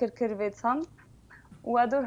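Speech: a woman talking in Armenian, with a short pause about a second in.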